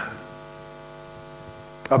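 Steady electrical hum, a low drone with several even overtones and a faint hiss, holding at one level.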